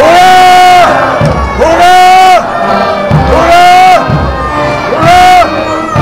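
A loud voice calling out in four long, drawn-out shouts, each rising, held for up to about a second, then falling away.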